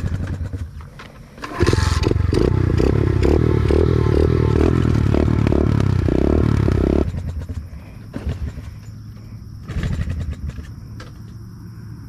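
SSR pit bike engine started after wading through deep water: it catches about a second and a half in, runs with an even pulsing beat for about five seconds, then cuts off suddenly. The rider believes it did not suck in any water.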